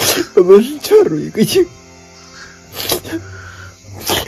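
A man sobbing: wavering, whining cries in the first second and a half, then short, sharp sniffling breaths, over steady background music.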